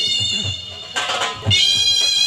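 Shehnai playing a sustained, nasal reed melody over steady dhol beats. The shehnai drops away briefly in the middle, with a short rush of noise, and comes back in strongly about a second and a half in.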